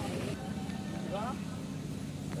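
A steady low engine hum, like a motor vehicle running nearby, under faint voices.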